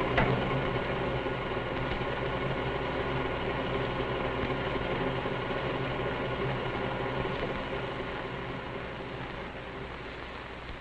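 Vitaphone projection machinery being started: a click, then the projector mechanism and its arc lamp running with a steady mechanical whirr and hum. The sound eases off slightly near the end.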